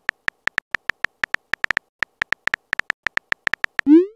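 Keyboard clicks from a texting-story app's typing sound effect, short, high ticks at a fast, uneven pace of about seven a second as a message is typed. It ends with a short, louder rising swoop, the app's message-sent sound.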